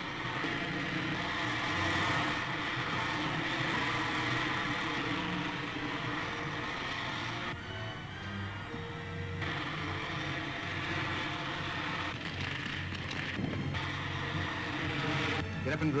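Film soundtrack of a rocket ship in flight: a steady rushing engine noise over an orchestral music score. The engine noise drops away for a couple of seconds about halfway through, and again briefly later, leaving the music.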